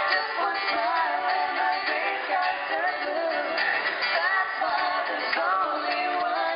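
A small vocal group singing live into microphones, a woman's voice and men's voices together in harmony over an acoustic guitar.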